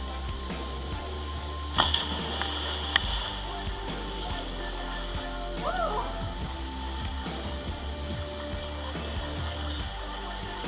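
Background music, with a splash about two seconds in as a person jumps into a river pool.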